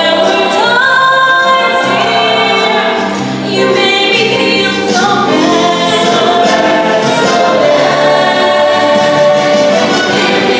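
High school show choir singing, several voices together with pitches sliding up between some notes.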